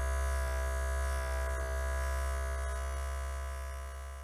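DentalVibe handheld vibrating injection-comfort device running: a steady electric buzz that fades toward the end.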